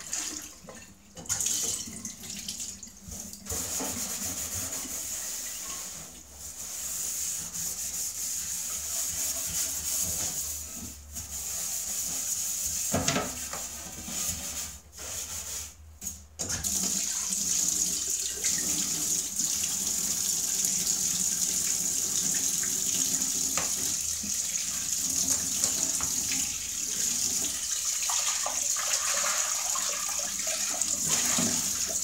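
Kitchen tap running into a stainless steel sink while pots are rinsed under it, with a few light knocks of metal. The water noise breaks off and changes several times in the first half, then runs steadily from about halfway.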